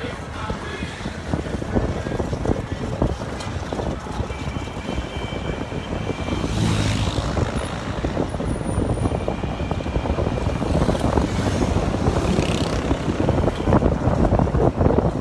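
Engine and road noise from a moving motorcycle riding through city traffic, a dense rumble with wind on the microphone. A faint steady high tone sounds briefly twice, about five and about ten seconds in.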